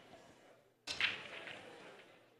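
A single sharp crack of pool balls colliding about a second in, fading out over about a second.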